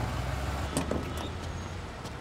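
Traffic-jam sound effect: the steady low rumble of idling car and truck engines, with a couple of faint clicks about a second in.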